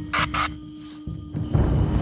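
Eerie background music held on a steady low drone, with two short noisy hits near the start and a deep rumble swelling up in the second half.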